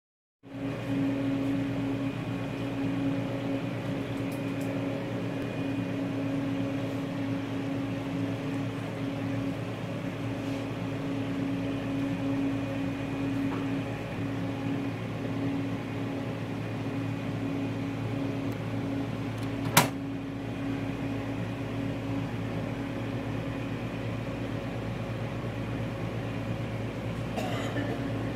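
Steady mechanical hum of running equipment, a fan-like whir with a few fixed tones in it. A single sharp click comes about twenty seconds in.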